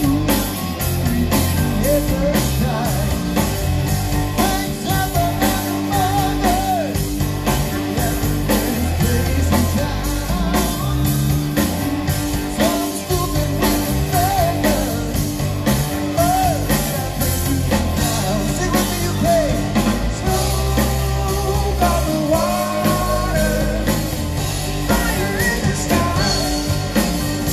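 A live rock band playing a guitar rock song: electric guitars, bass and a drum kit keeping a steady beat, with a vocalist singing over them.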